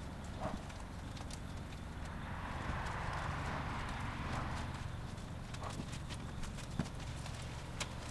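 Foam wash brush scrubbing a soaped car body, a soft rubbing swell in the middle, with scattered knocks and clicks over a steady low hum.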